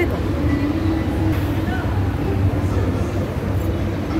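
Steady low rumble of a metro train and station, with faint voices over it.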